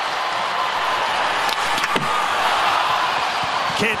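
Hockey arena crowd noise during a shootout attempt, with two sharp knocks about one and a half and two seconds in as the shot is taken and stopped by the goalie.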